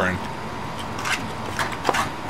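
Eating sounds: a few sharp clicks and light scrapes, about four in two seconds and loudest near the end, from a plastic fork picking at vegetables in a foam takeout container while food is chewed.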